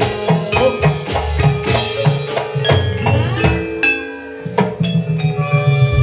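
Gamelan-style instrumental music: struck metallophones ringing out in a quick, steady run of notes over low drum beats, thinning briefly about four seconds in before picking up again.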